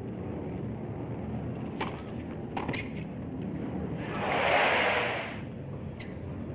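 Tennis ball struck by rackets with a few sharp pops, then about a second in before the end a short burst of crowd applause swells and fades over about a second and a half, over steady crowd noise.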